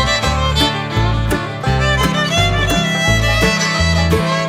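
Instrumental break of a bluegrass band recording: fiddle carrying the melody over strummed acoustic guitar and a bass line that moves note to note.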